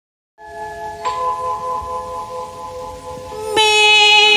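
A karaoke backing track starts: a sustained keyboard chord with a chime-like struck note about a second in, then a louder, bright held note comes in near the end.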